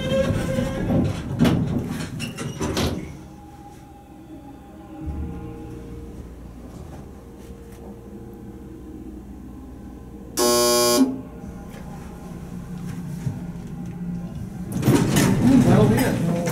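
American hydraulic elevator in service: door noise over the first few seconds, then a steady low hum while the car travels. About ten seconds in comes a loud electronic beep lasting under a second, and door and handling noise returns near the end.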